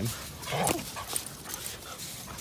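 Dogs at play, one giving a single short, rough vocalisation about half a second in.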